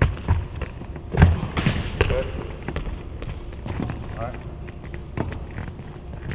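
A handball thudding and sneakers hitting a hardwood court in a large empty arena, a string of sharp knocks that echo, the loudest thud a little over a second in. A short call or two from a voice in between.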